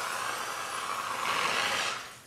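Hand-held fire extinguisher discharging: a steady hiss that cuts off suddenly near the end.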